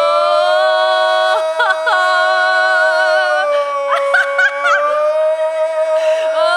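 A woman and a man singing a long held note in close two-part harmony, with quick vocal flourishes about a second and a half in and again around four seconds in.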